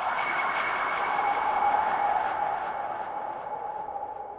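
A swelling whooshing drone, a noisy rush with two steady tones in it, that peaks a little under two seconds in and then slowly fades away.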